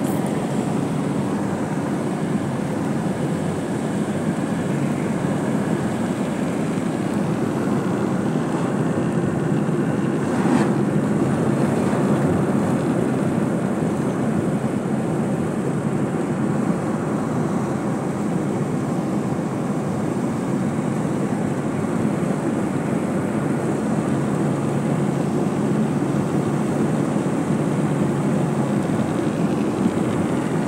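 Steady low rumble of a car's engine and tyres heard from inside the cabin while driving on a highway, with one brief thump about ten seconds in.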